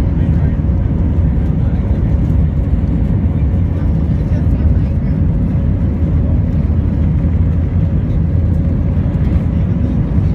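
Jet airliner taxiing, heard from inside the cabin: a steady low rumble of engine and rolling noise, with a faint steady hum over it.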